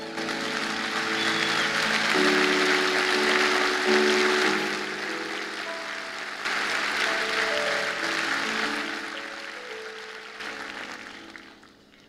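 A congregation applauding after a shared 'amen', over soft background music of held sustained notes; the clapping swells twice and both die away toward the end.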